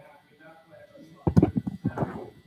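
Indistinct speech from people in the room: faint talk at first, then a louder, closer voice in the second half.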